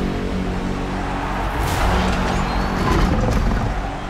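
Loud film-trailer soundtrack: steady low music notes under a dense, rumbling wash of sound effects, growing loudest about three seconds in.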